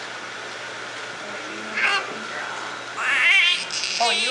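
Newborn baby crying. A short cry about two seconds in, then a longer, wavering, high-pitched cry from about three seconds in.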